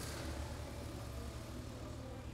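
A steady low engine rumble under a constant background hiss.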